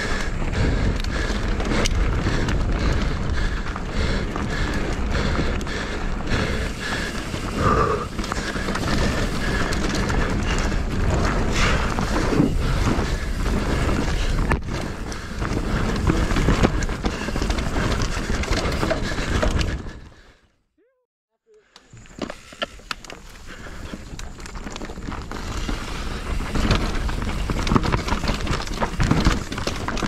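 Mountain bike descending a rough trail at race speed: a steady rush of wind and tyre noise with constant rattling and knocking from the bike. About two-thirds of the way through the sound drops out to near silence for about a second and a half, then builds back.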